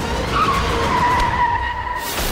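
Tyre screech of a small goods truck pulling away: one held tone that starts about a third of a second in, dips slightly in pitch and then holds steady, over a low engine rumble.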